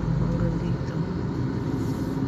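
Car engine and road rumble heard from inside the cabin of a slowly moving car, a steady low drone.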